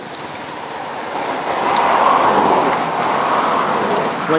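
A vehicle passing close by: its noise swells from about a second in, is loudest around the middle and stays loud near the end.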